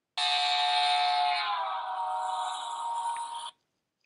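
Train horn sounding a chord of several steady tones that drop in pitch a little before halfway, as the train passes: the Doppler shift from approaching to moving away. It stops suddenly near the end.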